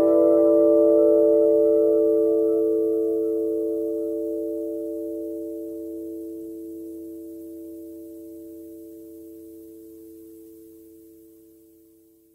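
Outro logo sting: a chime-like chord of several clear, steady tones, struck just before and slowly dying away, almost gone by the end.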